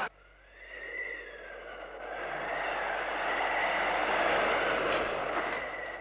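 Wind blowing through a blizzard, building up after a near-silent start, with a faint high whistling tone riding on it.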